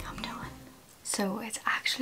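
A woman speaking softly, close to a whisper, starting about halfway through, after the tail of background music fades out.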